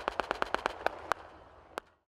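Distant blank rifle fire from a battle reenactment, a ragged volley of many shots several a second. The shots thin out and fade, with two sharper ones standing out in the second half, and the sound fades out just before the end.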